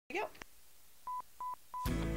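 Three short electronic beeps at one steady high pitch, evenly spaced about a third of a second apart, after a brief word of voice at the start; music with singing comes in right after the third beep.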